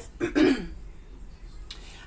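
A woman clearing her throat once, a short rough rasp about a quarter second in that slides down in pitch.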